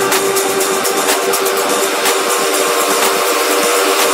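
Electronic dance music from a progressive house DJ mix in a breakdown: sustained synth chords and light high percussion ticks, with the bass and kick drum dropped out.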